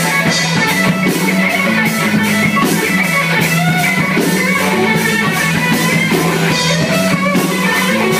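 Live rock band playing: electric guitar over a drum kit beat.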